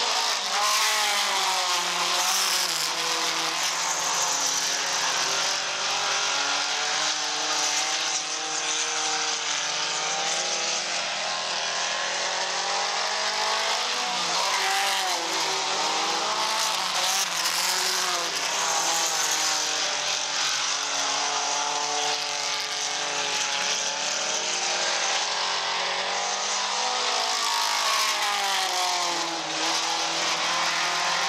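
A field of mini stock race cars running laps on a dirt oval. Several engines rise and fall in pitch together as the cars speed up and lift off through the turns.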